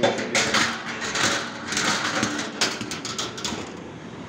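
Irregular scuffing and rustling noises with short clicks, close to the microphone, fading near the end.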